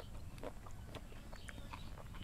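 Quiet eating by hand: a few faint clicks and mouth sounds of chewing while fingers pick rice and food off a banana leaf.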